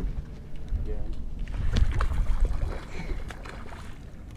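Wind rumbling on the microphone over open water, with a few light clicks near the middle.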